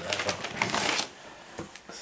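Plastic air-cushion packing and paper rustling and crinkling as they are handled for about a second, then quieter, with a light tap near the end.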